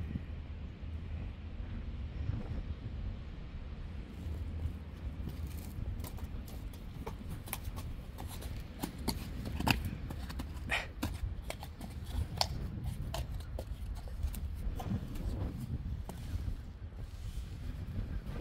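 Friesian horses shifting about on a wet concrete yard: scattered hoof knocks and scrapes, more frequent after the first few seconds, over a steady low rumble.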